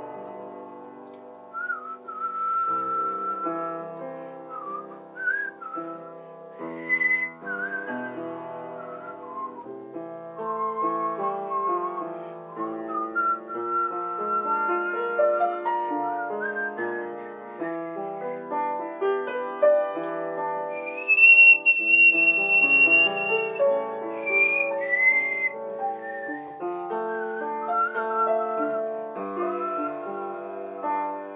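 Improvised music for upright piano and whistling: piano chords and notes run throughout while a single whistled melody sings above them, sliding between pitches. About two-thirds of the way through, the whistle climbs to a long, high held note.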